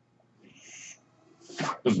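Short hiss of air from a mechanical ventilator delivering a breath, starting about half a second in and lasting about half a second. A man's speech starts near the end.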